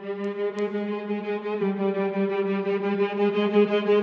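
Sampled string ensemble from Spitfire Evo Grid 3 playing a fast, evenly pulsing rhythmic figure on a held note, the bows pumping away on the string in a systems-music style. The texture shifts slightly about a second and a half in.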